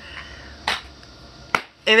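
A plastic cassette tape case being handled: a short scuff a little under a second in, then a single sharp plastic click about a second and a half in.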